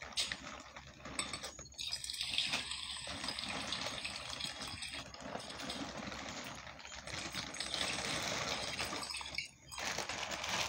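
Water running steadily, starting about two seconds in and stopping shortly before the end.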